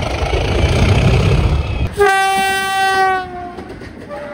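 A Class 37 diesel locomotive passing at speed, a loud rushing rumble; about two seconds in, after a sudden cut, a locomotive horn sounds one long note that sags slightly in pitch as it dies away.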